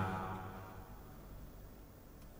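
A pause in a man's narration: the end of his voice fades out in the first half second, leaving only a faint, steady low background hum.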